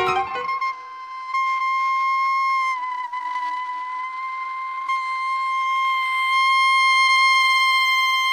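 Free-jazz duo playing: a single reed instrument holds one long high note, dipping slightly in pitch about three seconds in, over faint lower notes. Separate short notes die away in the first half second.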